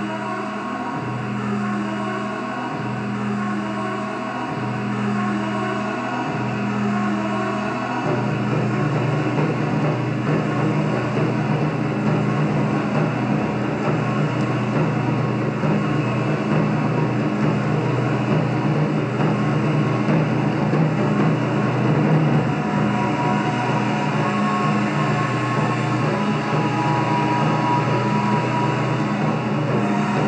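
Live taiko drum ensemble: slow, pulsing low tones for about the first eight seconds, then a dense, continuous rumble of rapid drumming.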